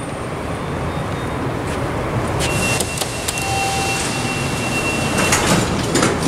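Fujitec traction elevator doors sliding shut at a garage landing, with a few clicks and a steady high beep lasting about three seconds, over a loud, steady rushing noise.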